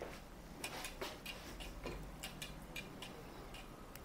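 Faint, irregular light clicking, about three clicks a second, from a bicycle's crank and drivetrain being worked by hand in a repair stand.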